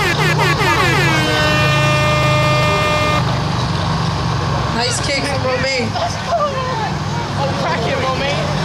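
A horn sounding one long, steady blast of about two seconds, which stops abruptly a little past three seconds in. People shout and cheer before and after it.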